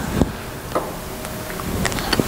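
Steady room hiss in a lecture hall with a few faint short clicks, about three across two seconds.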